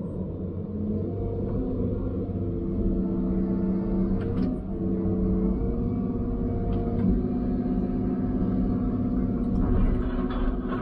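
Log loader's diesel engine and hydraulics running under load, heard inside the cab: a steady hum with several tones that step up and down in pitch as the controls are worked.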